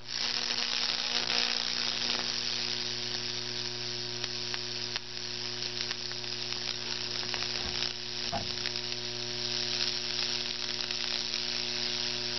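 High-voltage current from a microwave-oven transformer arcing and burning through damp, baking-soda-soaked plywood between two nail electrodes, burning Lichtenberg figures. The sound is a continuous sizzling crackle with scattered sharp snaps over the transformer's steady mains hum, and it starts suddenly as the power comes on.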